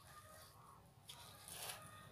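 Very faint scraping and crumbling of a small plastic trowel digging a hole in loose compost soil in a plastic pot, a little louder for a moment just past the middle.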